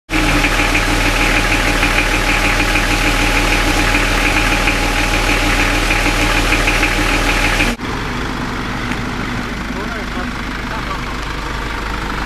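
Vehicle engine idling steadily; about eight seconds in the sound cuts abruptly to a quieter, steady engine hum.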